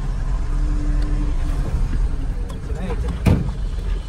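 Truck engine running steadily, heard from inside the cab as it drives slowly over a rough dirt road. There is one sharp knock about three seconds in.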